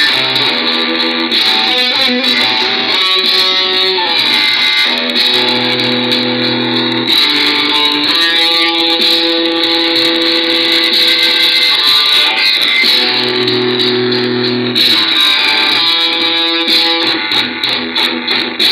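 Electric guitar playing held chords in a metal song, the chord changing every second or two.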